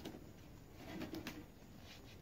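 A dove cooing faintly, a short low coo about a second in, with a few light clicks around it.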